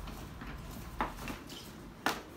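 A waterproof dry bag being handled over a counter: soft rustling of its coated fabric, with one sharp tap about a second in.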